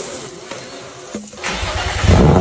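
A car engine starting up about one and a half seconds in, its low exhaust rumble building, after a stretch of hiss-like noise and a click.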